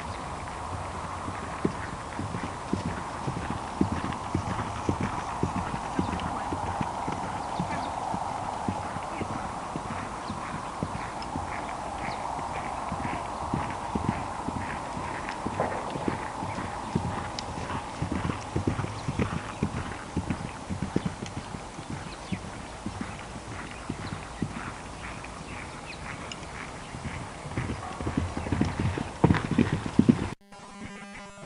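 Hoofbeats of a ridden pony cantering on dry, grassy ground, with an uneven run of thuds that grows louder near the end as the pony comes closer.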